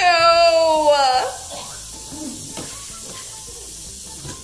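A child's drawn-out wordless cry of disgust on tasting a smoothie: one long held vocal note, falling slightly in pitch and lasting over a second, followed by quieter room sounds.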